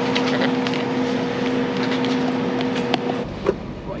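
A plastic lid being pressed and snapped onto a paper coffee cup: a few light clicks, the sharpest near the end, over a steady low hum. A little after three seconds the hum gives way to a quieter, different drone and a single knock.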